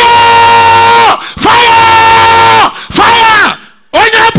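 A person's voice yelling three long, loud held cries, each about a second long and dropping in pitch as it ends.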